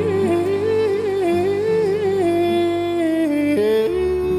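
Gypsy-jazz (jazz manouche) music in a wordless stretch of the song: a single sustained melody line moving step by step, with a brief dip in pitch near the end, over a steady low accompaniment.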